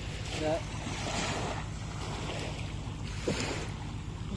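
Small waves washing up onto a sandy beach, the wash rising and falling, over a steady low rumble. A brief knock comes about three seconds in.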